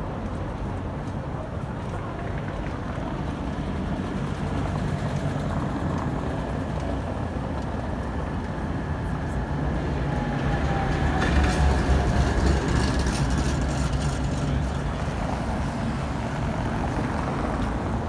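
Street traffic: a vehicle rolls past on a cobbled road, its low rumble building to its loudest a little past the middle and then easing off.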